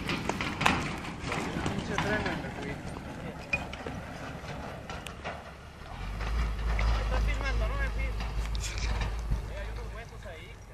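Indistinct voices of onlookers talking and calling out. About six seconds in, a heavy low rumble on the microphone sets in and runs on almost to the end.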